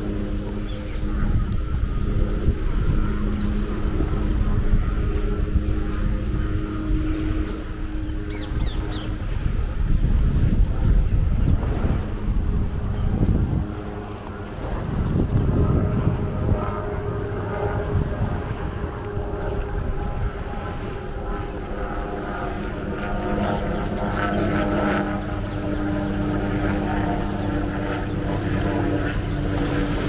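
Wind buffeting the microphone outdoors by the sea, over a steady engine hum.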